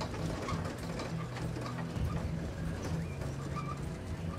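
Toyota Land Cruiser pickup's engine running with a low steady hum as the truck drives off along a dirt track, with a few short bird chirps over it near the end.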